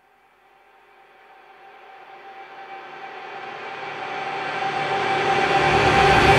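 A noisy swell with a single held tone fades in from silence and grows steadily louder: the build-up at the opening of a hardcore crossover track, before the band comes in.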